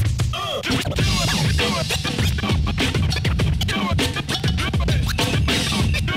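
Turntable scratching over a hip-hop beat: a record is dragged rapidly back and forth and chopped with the crossfader, making fast rising and falling squeals over a steady thumping bass.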